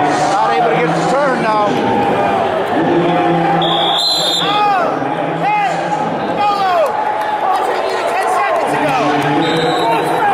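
Crowd and coaches shouting in a gym hall during a youth wrestling match, several voices overlapping. A referee's whistle blows briefly about four seconds in and again near the end, stopping the action.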